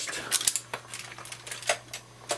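A few light, irregular clicks and taps of paintbrush handles being handled and picked through, over a faint steady low hum.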